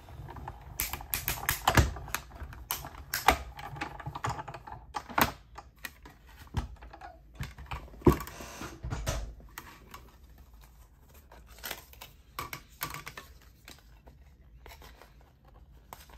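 A manual die-cutting machine is cranked, rolling a stack of acrylic cutting plates and metal dies through with a low rumble and irregular clicks. After that, the plastic plates clatter and click as they are handled and pulled apart.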